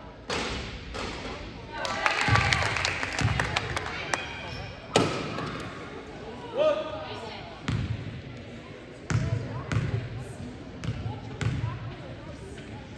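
Basketball bouncing on a hardwood gym floor, several separate thuds in the second half, as a player dribbles at the free-throw line before shooting. Voices and a brief cheer echo through the gym a couple of seconds in.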